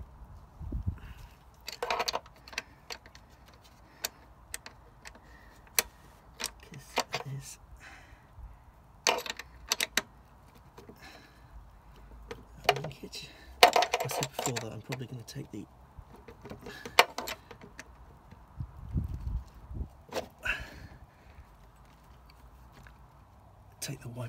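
Metal spanner clinking and clicking against a nut on the wiper motor linkage as it is tightened by hand. The sound comes in short irregular clusters of sharp metallic clicks with quiet gaps between.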